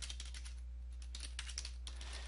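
Computer keyboard keys typed in a quick, uneven run of clicks, several a second, as a line of capital letters is typed. A steady low hum lies underneath.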